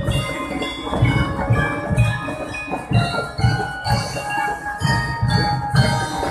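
A marching band plays: bell lyres and other mallet instruments ring out a melody over a drum beat of about two strokes a second.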